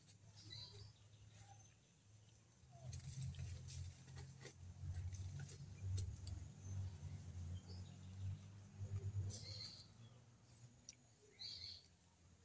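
Birds chirping faintly a few times, near the start and near the end, over a low rumble and a few soft clicks.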